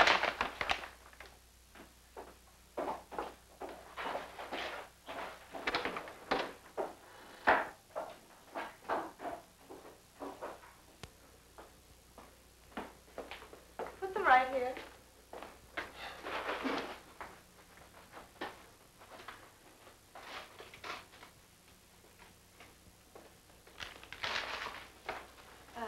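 Groceries being handled: a paper grocery bag rustling and items and a wooden crate being set down, heard as a run of short, irregular rustles and knocks. A brief voice sound comes about fourteen seconds in.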